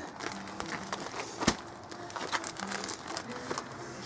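The plastic wrapping of a compressed peat moss bale crinkling and rustling as a child grips and heaves at it. There is one sharper knock about a second and a half in.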